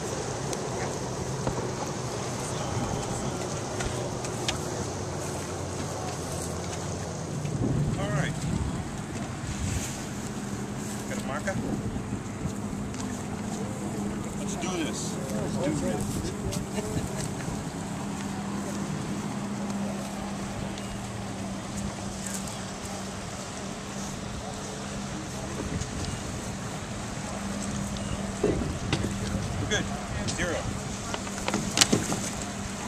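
Bass boat's outboard motor idling in toward shore, a steady low engine hum that settles in about eight seconds in, under scattered background voices and wind on the microphone.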